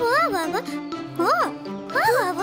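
An animated character's voice swooping widely up and down in pitch, without clear words, over light children's background music with steady held notes.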